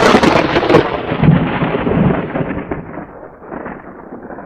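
Thunder sound effect: a sudden loud crack of thunder that rolls on as a rumble, slowly dying away.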